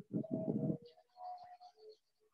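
A bird calling: one short call in the first second, then fainter calls.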